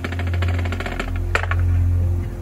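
Marching band field-show opening music: a steady low drone under fast, even ticking, with one sharp hit about one and a half seconds in.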